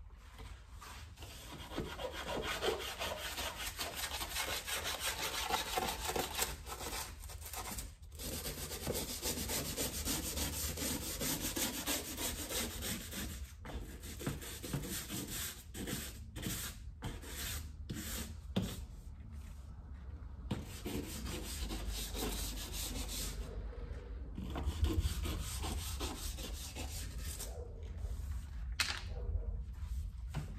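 Rubber-gloved hand scrubbing a painted baseboard by hand: a scratchy rubbing sound that runs nearly throughout, broken by several short pauses.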